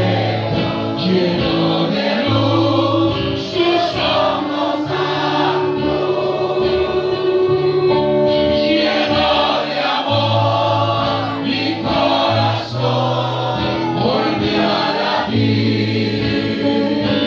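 A congregation singing a gospel worship song together, accompanied by a live band with guitar and sustained bass notes that change every second or two.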